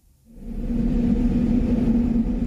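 After a brief near silence, a deep steady drone fades in within the first half second and holds at an even level, the opening bed of a devotional soundtrack.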